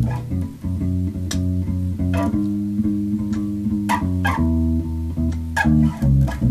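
Electric bass guitar played note by note, each note ringing about half a second to a second before the next. Several notes start with a sharp pluck click.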